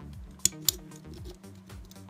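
Two sharp metallic clicks about a quarter second apart, from a small nut being turned by hand on a bolt inside a thin sheet-metal lamp housing, over quiet background music.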